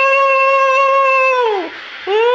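Conch shell (shankh) blown in one long, steady note that sags in pitch and fades about a second and a half in. Another blast starts near the end.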